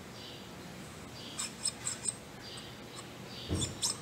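Light metallic clicks and taps of a brass lead-screw nut being handled and fitted into a Bridgeport milling-machine yoke. A few quick ticks come about a second in, then a duller knock and more clicks near the end.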